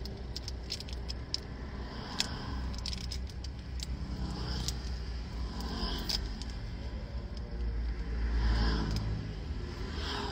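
Low, steady rumble of a car cabin, swelling briefly near the end, with many light clicks and rattles scattered through it.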